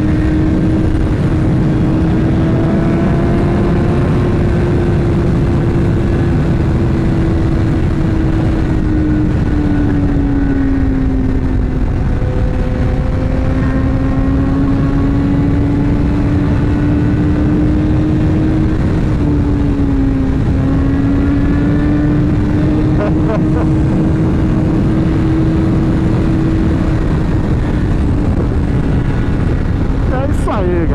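BMW S1000R inline-four engine holding a steady highway cruise, its note sagging slightly twice as the throttle eases, under heavy wind rush on the microphone.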